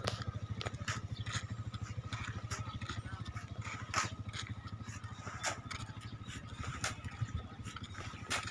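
A vehicle engine running steadily, with scattered clicks and rattles over it.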